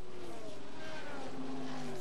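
Engines of 1970s endurance racing cars running hard as the field passes at the start. Several engine notes overlap and fall slowly in pitch as the cars go by.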